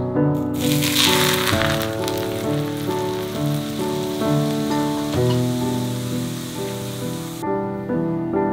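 Hot oil poured over chopped green onion, ginger, garlic and Sichuan peppercorns in a stainless steel bowl, sizzling. The hiss starts about half a second in, is strongest in the first second, and stops abruptly near the end. Background piano music plays underneath.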